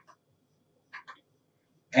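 A lull with a few faint short clicks, one at the start and a pair about a second in. A man starts speaking right at the end.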